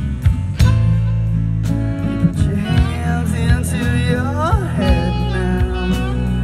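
Live band playing an instrumental passage on electric guitars, bass and drums. A lead guitar line slides up and down in pitch through the middle of the passage.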